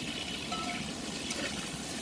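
Pork chunks and freshly added sliced onion sizzling steadily in hot oil in a kazan.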